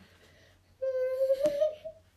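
A high voice holding one drawn-out note for about a second, rising slightly in pitch, with a short click partway through.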